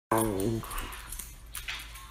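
A dog gives a short, low, slightly falling groan right at the start, fading within about half a second, followed by quieter faint sounds.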